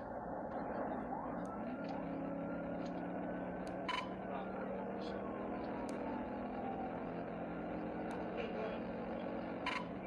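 Patrol car's engine and road noise at highway speed, heard from inside the cruiser, with the engine note climbing about a second in as it accelerates. A few short clicks stand out over the steady drone.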